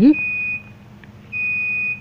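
Digital multimeter's continuity buzzer beeping twice, each a steady high-pitched beep of about half a second, as the probes touch a phone board's battery-connector pin. The beep means continuity to ground, marking that pin as the battery's negative terminal.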